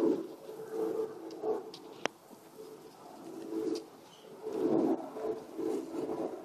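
Low cooing calls of doves, repeated in short phrases over and over, with one sharp click about two seconds in.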